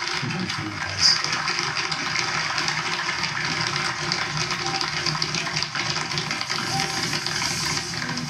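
An audience applauding, a steady spatter of clapping heard through a television's speaker.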